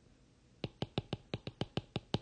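A stylus tapping quickly on a drawing screen, dotting stars into a sketched flag: about nine sharp taps at roughly six a second, starting about half a second in.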